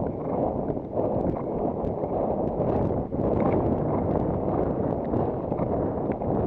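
Wind rushing over a helmet camera's microphone on a galloping horse, steady and loud. The horse's hoofbeats come through underneath as faint, short knocks.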